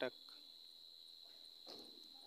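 A cricket trilling steadily in one continuous high-pitched tone, faint under the quiet room tone.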